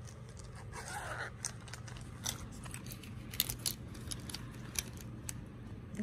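A small zippered mesh pencil pouch being opened one-handed and handled: a brief rasp about a second in, then scattered small clicks and rustles as the pouch and the pens inside are worked.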